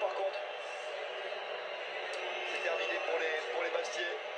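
Stadium crowd noise from a televised football match, a steady din of many voices heard through a TV speaker, with a few louder voices standing out about two and a half seconds in.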